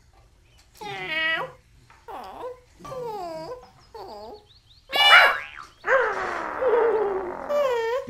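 Cartoon animal vocal sounds from a dog and a parrot: four short calls about a second apart, each dipping and rising in pitch, then a sharp, high cry about five seconds in, the loudest, followed by a longer, rougher call.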